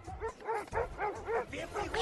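Dobermann dogs yipping in a quick run of short cries that rise and fall in pitch, about four a second.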